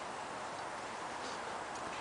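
Faint, steady outdoor background hiss with no distinct sound standing out.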